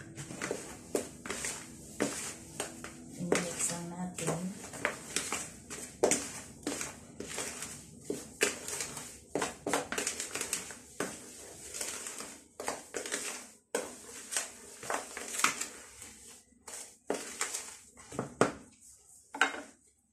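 A bare hand mixing dry ingredients (flour with baking powder) in a large plastic bowl: irregular scratchy rubbing and scraping strokes, with short pauses between them.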